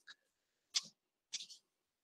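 A pause between spoken phrases: near silence broken by two brief, faint breath-like sounds, the first a little under a second in and the second about half a second later.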